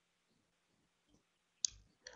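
A single short, sharp click about one and a half seconds in, against near silence.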